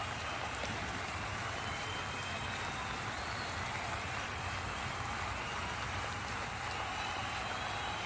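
Steady, even hiss-like background noise with no distinct events.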